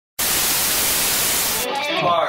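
Loud, steady static hiss that starts just after the beginning and cuts off suddenly about a second and a half in, with a voice starting right after.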